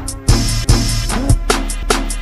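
Chopped-and-screwed, slowed-down hip-hop beat with no vocals: deep bass-drum hits under hi-hat ticks. The beat dips briefly just after the start, then a cymbal-like wash fills about half a second before the beat carries on.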